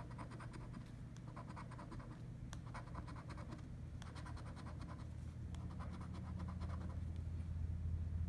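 A coin scraping the scratch-off coating from a paper lottery ticket, in four quick bursts of rapid strokes. The scraping stops about a second before the end.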